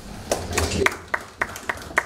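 Light applause from a few people in the audience: sharp, evenly paced claps, about three a second.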